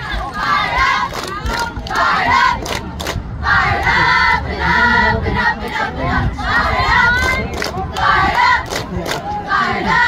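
A girls' cheer squad shouting a cheer together in repeated high-pitched phrases, with sharp hand claps running through it.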